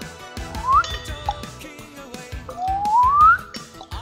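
Two rising whistle-like tones, a short one just under a second in and a longer one near the end, over background music with a steady beat.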